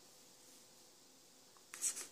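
Near silence, then near the end a brief scratch of a felt-tip marker writing on paper.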